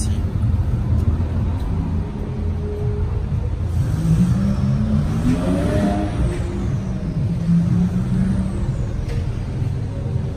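Steady low car-engine rumble, with one engine rising in pitch from about four seconds in and falling away again by about eight seconds, as a car revs or drives past.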